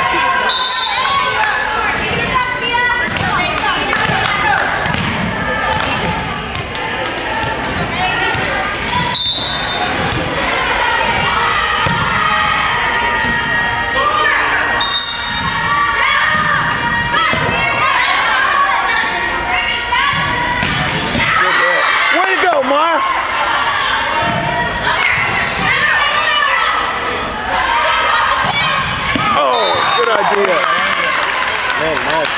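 Volleyball play in a gymnasium: a ball is struck and bounces on the hardwood floor, many sharp knocks echoing in the hall, over the voices of players and spectators calling out.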